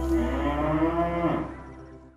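A cow mooing once, its call rising and then falling in pitch, over steady background music; both fade out near the end.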